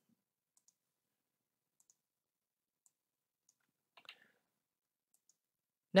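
Near silence with a few faint computer mouse clicks, one slightly louder about four seconds in.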